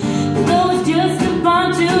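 A woman singing a country song, accompanying herself on a strummed acoustic guitar, holding her notes between words.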